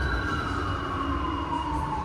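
New York City subway train rumbling in the station, with a high whine that slides steadily down in pitch; the sound cuts off suddenly at the end.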